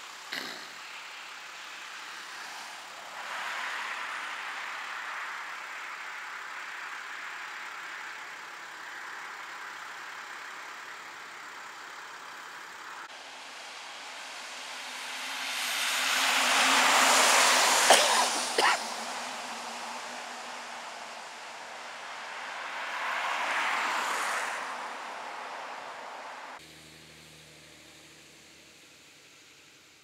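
Road traffic passing: a steady hiss with one vehicle swelling up to a loud pass about halfway through, two sharp clicks at its peak, and a smaller pass a few seconds later. Near the end the sound drops to a faint hush.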